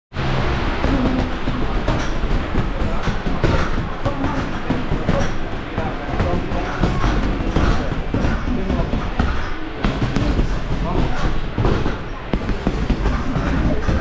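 Boxing gloves thudding into hanging heavy punching bags: many punches in quick, irregular succession from several people at once. Background music and voices are also heard.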